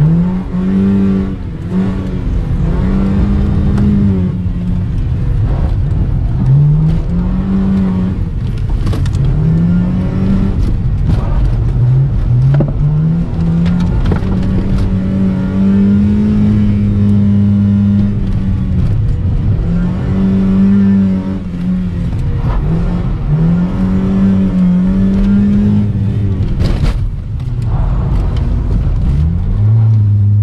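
Honda Civic's petrol engine heard from inside the cabin, revving up and dropping back over and over as the car accelerates hard and lifts off round a tight course. The engine pitch climbs in short rising sweeps about half a dozen times, with a longer steady stretch in the middle.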